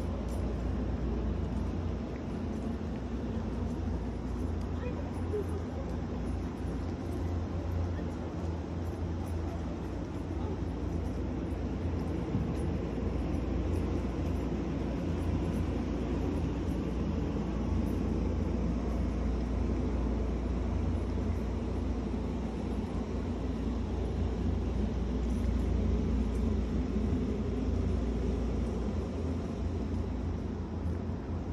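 Steady outdoor background noise with a low rumble, picked up by a handheld phone microphone during a walk.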